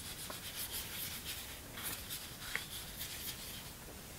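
Paintbrush scrubbing opaque watercolor paint across watercolor paper: a quick run of soft rubbing strokes, several a second.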